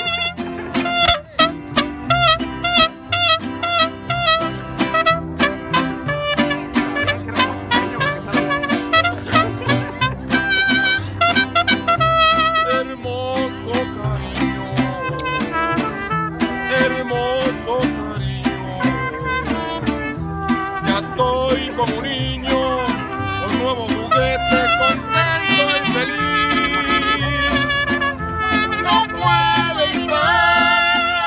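Mariachi band playing, trumpets carrying the melody over a steady rhythmic beat.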